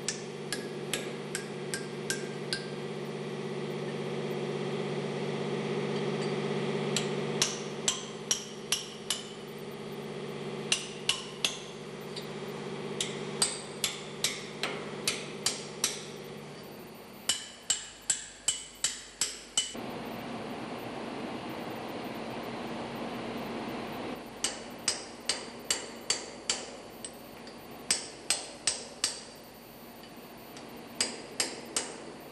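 A hammer striking a steel chisel in quick runs of sharp metallic taps, with short pauses between runs, bending out the locking-disc tabs on the lock nuts of a marine diesel engine's chain-tightener bolt. A steady background hum runs underneath.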